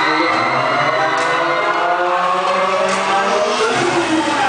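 Loud playback from a dance routine's mixed track through a hall sound system, dense with overlapping rising and falling pitch glides and a few sharp strikes.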